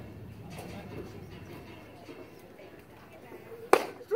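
Baseball bat striking a pitched ball once, a single sharp crack near the end, over faint background chatter.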